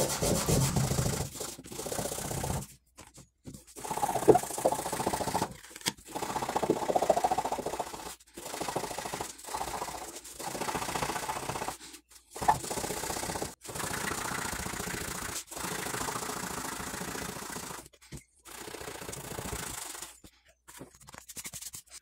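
Bombril steel wool scrubbing the copper face of a freshly etched phenolic circuit board, taking off the leftover toner to bare the copper traces. It goes in scratchy bouts of a second or two, with short pauses between them.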